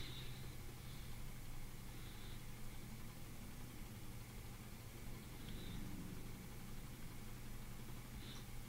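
Low room tone: a faint steady low hum with hiss, with a few brief, faint high blips scattered through it.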